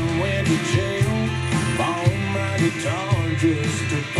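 Country song with a singing voice and guitar, playing on FM radio through small desktop computer speakers and a subwoofer.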